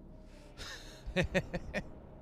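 A man's breathy exhale, then a quick burst of laughter: four or five short "ha" pulses.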